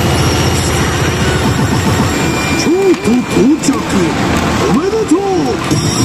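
Pachinko machine effect audio: a game voice making several short, arching calls in the second half. It plays over a steady loud din of electronic sound.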